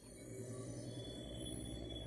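Low, steady electronic humming drone, a sound effect played over glowing 'activated' hands.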